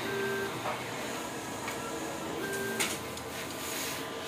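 Large-format banner printer running with a steady whir and hiss, broken by short whining motor tones that come and go every second or so. A single sharp click sounds near the end.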